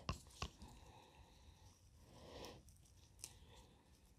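Near silence, with faint scattered rustles and a few soft clicks from gloved hands pressing compost and handling watercress cuttings.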